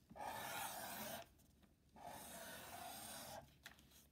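Black Sharpie marker drawing on thin newspaper: two faint strokes of the felt tip rubbing across the paper, each just over a second long, with a short pause between them, as the two sides of a heart are drawn.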